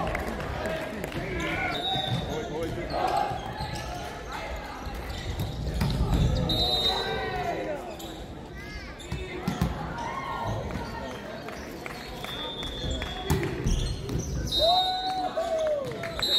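Indoor volleyball play in a sports hall: a ball striking and bouncing on the court several times, with short high shoe squeaks on the court floor and players calling out.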